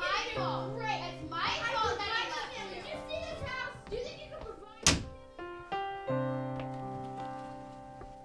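Indistinct voices over soft background music, then a single loud door slam about five seconds in as a bedroom door is pushed shut; the music carries on and fades.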